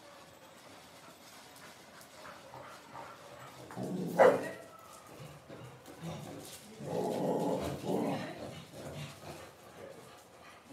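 A dog barks once, loud and sharp, about four seconds in, followed by a longer stretch of dog vocalising around seven to eight seconds.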